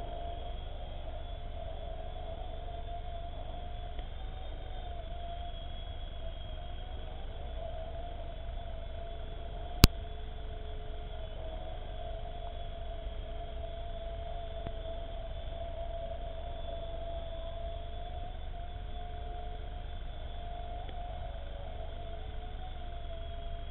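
Xieda 9958 micro RC helicopter flying, its small electric motor and rotor giving a steady whine that wavers slightly in pitch. A single sharp click a little under halfway through.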